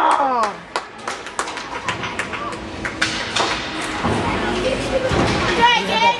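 Ice hockey sticks and puck clacking on the ice, a quick run of sharp taps over the first few seconds, with spectator voices and chatter throughout. A cheering shout fades out right at the start.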